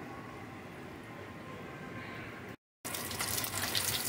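Breaded pork cutlets shallow-frying in hot oil in a metal pan: a steady sizzle. It cuts out for a moment about two and a half seconds in and comes back a little louder.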